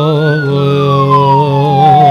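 Electronic siren-like wail that rises to a peak about a third of a second in, then glides slowly down in pitch. Under it, a held musical note wavers steadily.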